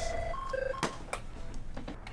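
A quick run of short electronic beeps, each at a different pitch like keypad tones, followed by two sharp clicks.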